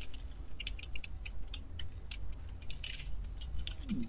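Computer keyboard keys tapping in quick, irregular clicks as a word is deleted and retyped, over a low steady hum.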